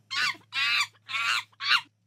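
Recorded chimpanzee calls: four short, high-pitched cries in a row, each well under half a second.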